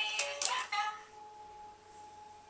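Baby's electronic musical toy playing a short tune on its loud setting, then holding one steady note.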